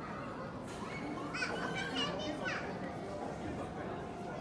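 Echoing murmur of visitors' voices in a large hall, with a child's high-pitched voice calling out for about a second and a half, starting about a second in.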